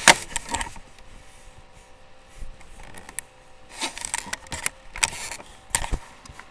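Objects being handled and moved close to the microphone: a sharp click at the start, then short bursts of clicking and rustling, several times.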